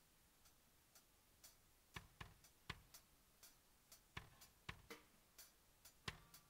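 Near silence broken by faint, sharp ticks, roughly two a second and unevenly spaced.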